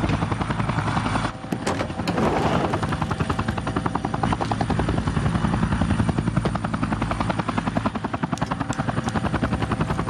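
Helicopter on the ground with its rotor still turning, the blades beating in a rapid, even rhythm over the turbine's running sound. The level dips briefly about a second in, then the beat carries on.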